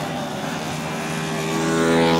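70 cc racing motorcycle engines running steadily together as the bikes pass, getting louder near the end.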